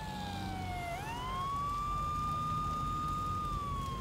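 An emergency vehicle siren wailing: its pitch slides down, sweeps back up about a second in, holds high, and begins to fall again near the end.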